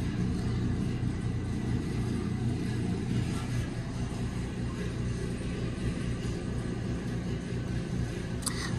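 A steady low rumble with a constant hum, unchanging throughout.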